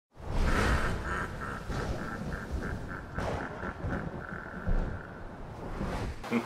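An intro sound effect: a low rumble that starts loud, under a mid-pitched tone pulsing about five to six times a second, which turns into a steady tone near the end and then stops.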